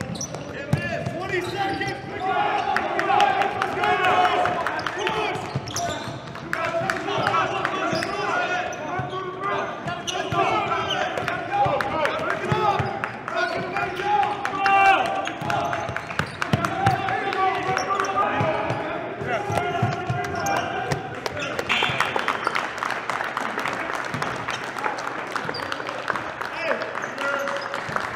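Basketballs bouncing on a gym floor in a large echoing hall during a practice drill, with voices calling out over them. Near the end, hand clapping joins in.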